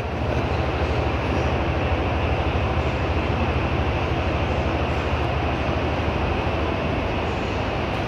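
Steady, loud background din of a busy exhibition hall: a continuous low rumble with a dense wash of noise over it.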